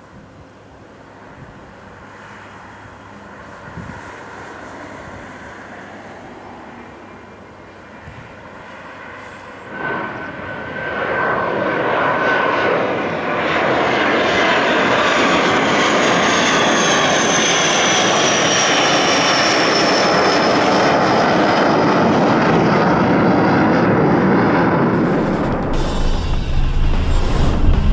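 Dassault Falcon 50's three TFE731 turbofan engines at power after a touch-and-go. The jet is distant and fairly quiet at first, then after about ten seconds it turns loud as the jet climbs out overhead. A high turbine whine slides down in pitch as it passes.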